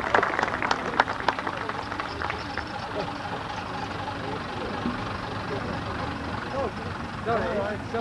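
Vintage double-decker bus engine running low and steady as the bus moves off slowly, with a spatter of clapping in the first second or so.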